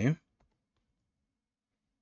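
Near silence in a small room after the end of a spoken word, with one faint computer click about half a second in.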